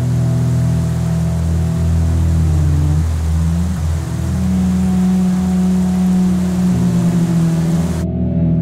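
Waterfall: a steady rush of falling water that starts and stops abruptly with the waterfall shots. Under it, background music with low sustained drone tones that shift pitch twice.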